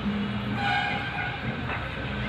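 A horn sounds once, briefly, about half a second in, over a steady low rumble of outdoor background noise.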